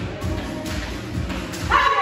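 Background music with the light, regular ticks of jump ropes, and a dog barking loudly near the end.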